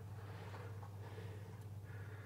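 Quiet room tone: a faint steady low hum under light hiss, with no distinct sound from the fillet going into the simmering water.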